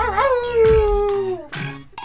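A dog-like howl within a song: one long call that wavers at first, then slides slowly down in pitch and fades about a second and a half in, over the song's backing beat.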